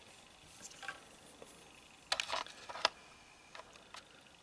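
Faint clicks and taps of a small plastic toy speeder bike being handled and turned in the fingers, with a few louder knocks just after two seconds and near three seconds.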